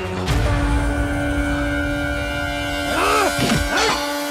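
Film-score drone: held chords over a low rumble, with a short hit just after the start and two swooping up-and-down glides about three seconds in.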